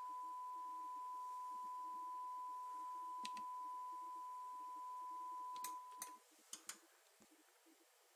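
Steady 1 kHz test tone from an audio analyser's signal generator, cutting off about six seconds in as the generator is muted for a signal-to-noise measurement. A few sharp clicks of front-panel buttons come before and around the cut-off, and then there is only faint background hiss.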